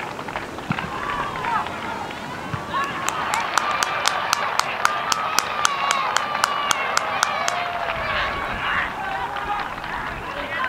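Football crowd and players' voices shouting as a goal is celebrated, with spectators clapping in unison, about four or five claps a second, from about three seconds in until a little past the middle.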